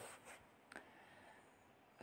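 Near silence with the faint scratch of a marker pen writing on paper, and one light tick about three quarters of a second in.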